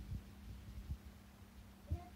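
Soft, irregular low thumps of bare feet padding on the boat's cabin floor, over a steady low hum.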